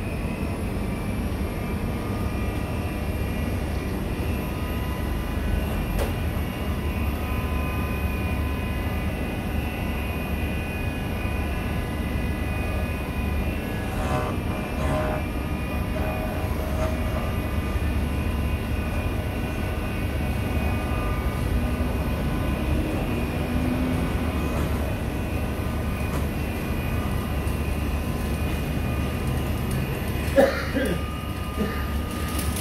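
Electric key-cutting machine running steadily with a low hum and a high whine, its cutter working a key blank.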